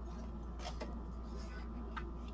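Faint handling of thin plastic stencil sheets, with a couple of light ticks a little way in and another near the end, over a steady low hum.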